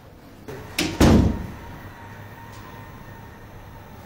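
An office door is pulled shut. The latch clicks and the door closes with a heavy thud about a second in.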